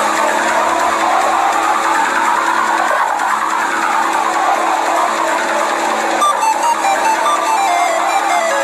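Music from the animation's soundtrack: a melody of distinct notes over a steady held low tone.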